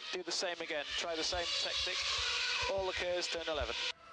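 Formula 1 team radio broadcast: Mark Webber's Red Bull race engineer speaking to him over the in-car radio in a compressed, hissy radio voice. He is telling Webber to use the same tactic and deploy all his KERS at turn 11 to attack the car ahead. The message cuts off abruptly at the end.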